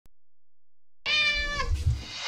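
A cat meowing: one call starting about a second in, holding its pitch and then dropping at the end, followed by a low rumble.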